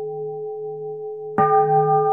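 Singing bowl ringing with a slow, wavering hum. It is struck again about one and a half seconds in, and the fresh ring sounds over the old one.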